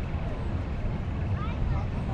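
Open beach ambience: a steady, uneven low rumble of wind on the microphone, with faint distant voices of people on the sand.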